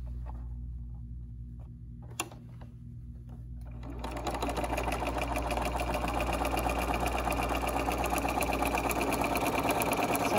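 Electric sewing machine starting about four seconds in and running at a steady speed, rapidly stitching a quarter-inch seam through pinned quilt fabric. Before it starts there is only a low hum and a single click.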